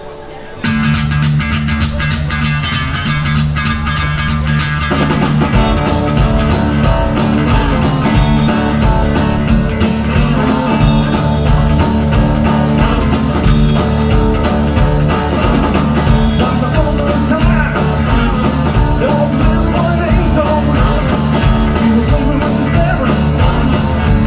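Live rock-and-roll band, acoustic guitar, bass guitar and drums, starting a song: the instruments come in together about a second in, and the sound gets fuller and louder about five seconds in as cymbals join, then the band plays on steadily.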